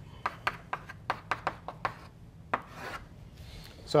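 Chalk writing on a blackboard: a quick run of short taps and scrapes, about four or five strokes a second, with a brief pause about two seconds in.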